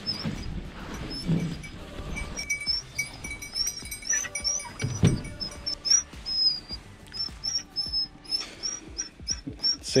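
Dogs whining, short high squeaky calls about two a second, with soft thumps as birds are laid on a pickup's plastic bed liner.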